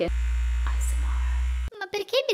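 Electric facial cleansing brush switched on, vibrating with a steady low buzz for about a second and a half, then cut off abruptly.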